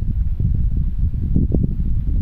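Wind buffeting the microphone: a loud, low, uneven rumble with a few dull thumps about one and a half seconds in.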